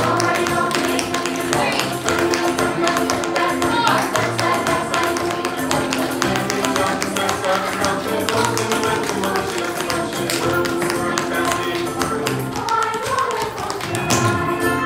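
Recorded music playing with quick, crisp taps of tap shoes striking a hard dance floor as a dancer steps through a routine.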